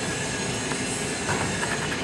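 A metal key scraping the coating off a paper scratch-off lottery ticket: a continuous rough scratching.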